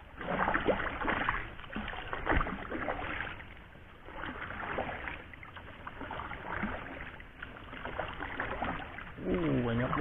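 A wooden paddle stroking through river water beside a small boat: irregular splashes and swishes, loudest in the first few seconds. Near the end a voice begins.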